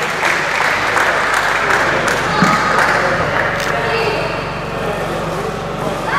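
Audience applauding in a large hall, a dense patter of clapping that eases off a little toward the end, with some voices mixed in.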